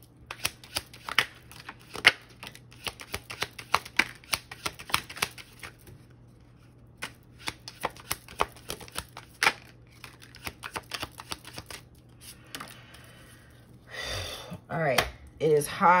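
A tarot deck shuffled by hand: quick runs of crisp card clicks and flicks, with a short pause about six seconds in, then thinning out after about ten seconds.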